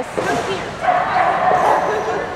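A dog yipping and whining.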